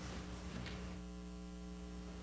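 Faint, steady electrical mains hum, a low buzz with several even overtones, over a light hiss.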